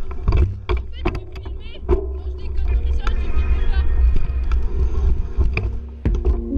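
Wind rumbling on the microphone of a handlebar-mounted camera, with irregular knocks and rattles from a mountain bike riding a rough dirt singletrack. A music track runs underneath and holds a steady note from about halfway.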